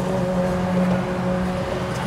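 Inside a car driving slowly in traffic: steady engine and road noise with an even low hum.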